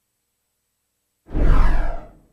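Silence, then about a second and a quarter in, a sudden whoosh sound effect with a heavy low rumble that dies away within a second.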